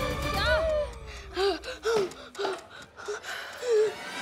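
Short gasping cries from a person caught in a vacuum cleaner's suction, over a low vacuum hum. The hum and a falling tone stop about two seconds in as the cleaner is switched off, and music plays underneath.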